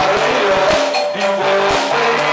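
A live rock band playing, with electric guitar, keyboard and drums over a steady drum beat. The recording is poor and harsh.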